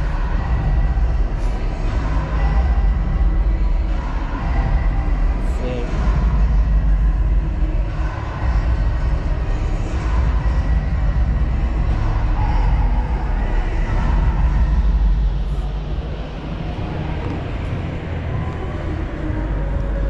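Steady background noise of a large exhibition hall: a continuous low rumble with faint crowd chatter.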